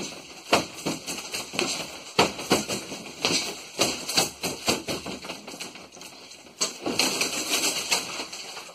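Front kicks striking a freestanding punching dummy, which knocks and rocks on its weighted base: a run of sharp, irregular thuds and knocks, with a second cluster near the end.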